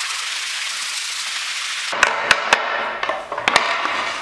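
Sandpaper rubbed by hand over a sagwan (teak) wood board, a steady scratchy hiss. About halfway through the hiss thins, and a few sharp wooden knocks come over it.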